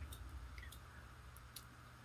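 Very quiet room tone with a steady low hum and a few faint, sharp clicks.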